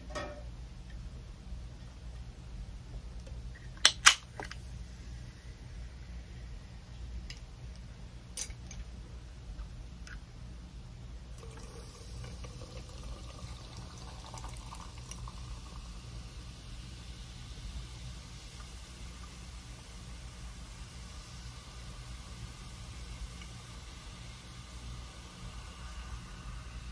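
A can of Canada Dry ginger ale snapping open with one sharp crack about four seconds in, followed by a few light clicks. From a little under halfway through, the ginger ale is poured over ice into a tall glass, with a steady fizzing hiss.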